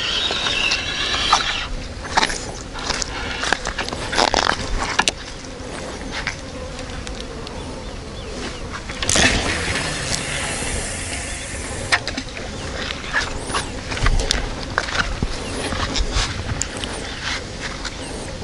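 Feeder rod and spinning reel being cast and worked: line running off the spool, with scattered clicks and a louder rush about nine seconds in.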